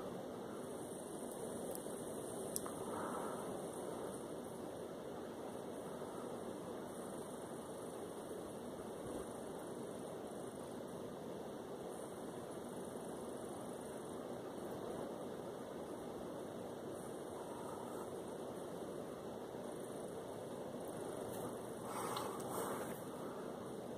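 Steady background hiss of room noise, with one faint click about two and a half seconds in.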